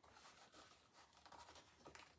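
Near silence with faint scratching and rustling as a shoe is slipped on by hand.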